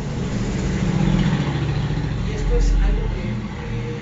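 A motor vehicle's engine rumbling past, with a low rumble that swells about a second in and again near three seconds before easing off.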